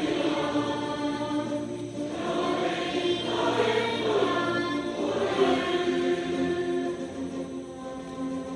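A group of girls singing a song together, holding long notes that change pitch every second or so.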